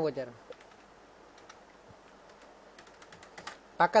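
Computer keyboard typing: a run of faint, quick keystrokes entering a number, the keys bunched most closely near the end.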